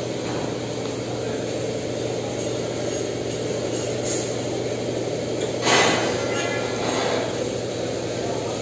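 Steady low machinery hum, with one short, sharp metallic clack about three-quarters of the way through as the steel quick-connect couplers of a hydraulic bolt-tensioner hose are handled and joined.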